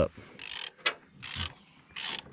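Socket ratchet wrench being swung back and forth on a nut of a haybine's sickle drive: about three short bursts of ratchet clicking, one per stroke.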